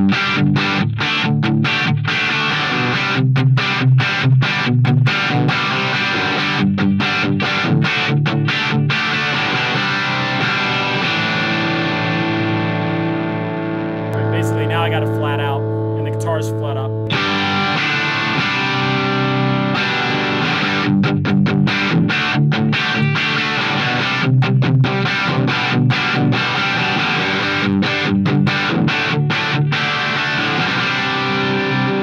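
Electric guitar played through a Sound City 50 valve head on its normal (bass) channel, volume at about six, into a 4x10 speaker cabinet: strummed chords and riffs. About halfway through one chord is left to ring for several seconds and is cut off sharply, then the chord playing resumes.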